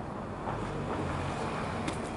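Steady outdoor background noise with a low rumble, and one faint click near the end.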